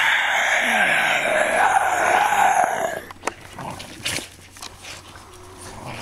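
Two Boston terriers growling as they tug over a toy football: one raspy growl lasting about three seconds that stops abruptly, then only faint low sounds and a few clicks.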